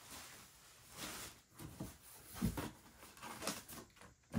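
Rustling and crinkling of plastic wrapping and a cardboard box being handled during unpacking, with a few soft knocks, the heaviest about two and a half seconds in.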